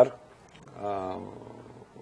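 A man's voice holding a drawn-out hesitation sound, a steady 'ehh' of about a second, in a pause between phrases.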